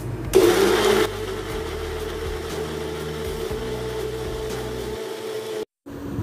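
Electric mixer-grinder grinding chopped onion and garlic into paste. The motor runs steadily, louder and noisier for its first half-second or so, then cuts off suddenly near the end.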